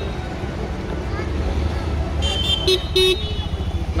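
Road traffic rumbling steadily, with a vehicle horn giving a few short, high-pitched honks about two to three seconds in.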